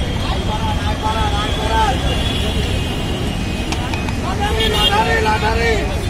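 People talking in the background over a steady low rumble of street traffic, with voices coming in twice, briefly near the start and again near the end.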